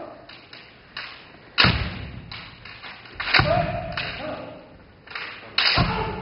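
Kendo sparring: bamboo shinai strikes on armour with stamping feet on a wooden floor. There are three loud strikes about two seconds apart, and a shout (kiai) just after the second.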